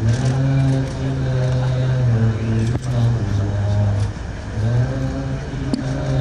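An engine running steadily with a low hum, its pitch shifting slightly and dropping away briefly about four seconds in.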